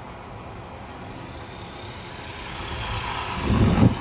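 Electric 450-size RC helicopter coming down in an autorotation: the rotor blades' whoosh grows louder as it nears and flares for landing, with a thin high whine slowly falling in pitch as the head speed bleeds off. Low rumbling buffeting builds in the last second as it reaches the ground.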